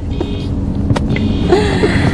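A steady low rumble, with one sharp click about a second in.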